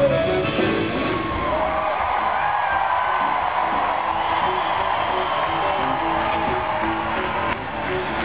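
Live rock band playing a repeating riff in a large arena, heard from the audience, with the crowd cheering and whooping over it.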